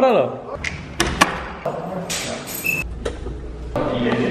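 A door being handled, with sharp clicks and knocks: two close together about a second in and another near the end. People's voices are heard around them.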